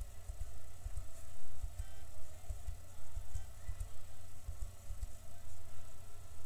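Faint taps of computer keyboard keys, pressed in an irregular run, over a low, uneven rumble of background noise.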